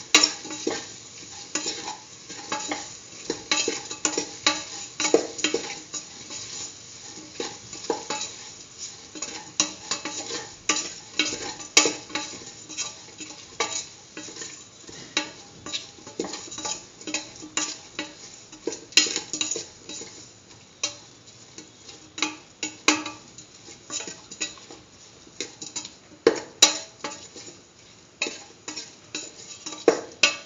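A spatula stirring and scraping against a stainless steel pot, with irregular clicks and scrapes several times a second. Underneath is a faint sizzle of chopped tomato, shallots, garlic and green chillies sautéing in oil.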